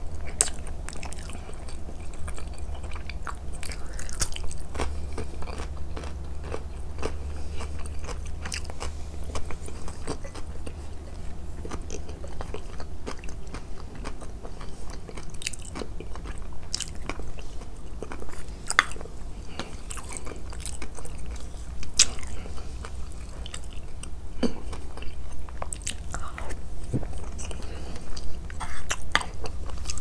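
Close-miked chewing and crisp, crunchy bites of food, pickled vegetables and raw green chili among them, in irregular sharp crunches through the whole stretch. Occasional clicks of a spoon and fork on the plate and bowl, over a low steady hum.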